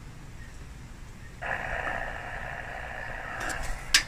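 RS-918 HF SDR transceiver's receiver audio switching on about a second and a half in as the radio finishes booting: a steady hiss of band static from its speaker. A sharp click near the end.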